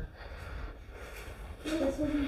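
A quiet lull with a low, even rumble, then a faint voice starting near the end.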